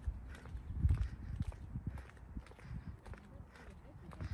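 Footsteps of someone walking on a concrete path, heard as irregular low thumps with a low rumble, loudest about a second in.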